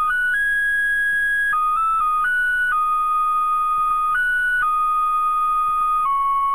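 A solo flute-like melody of long held notes stepping between a few neighbouring pitches, with one higher note held about a second near the start, at a steady level and with no accompaniment.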